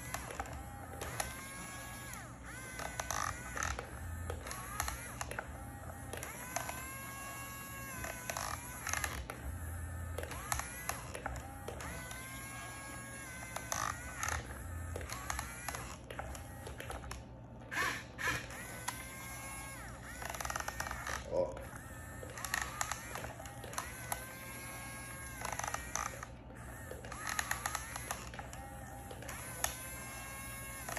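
Toy remote-control Yigong excavator's small electric motors whining again and again as the boom, arm and bucket move. Each whine lasts about a second, rising in pitch, holding, then falling away.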